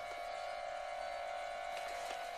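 A steady faint hum on one even tone over a light hiss, with no distinct events.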